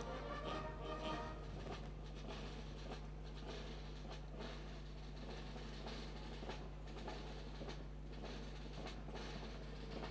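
Brass band playing a march, faint and distant, with drums, clearest in the first couple of seconds.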